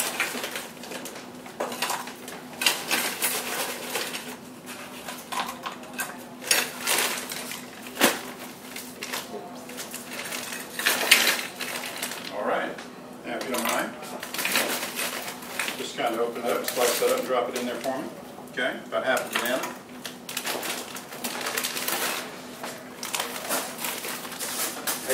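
Scattered light clicks, knocks and rustling from plastic containers, scoops and bags of shake ingredients being handled on a counter, with voices talking in the background. A faint steady hum runs underneath.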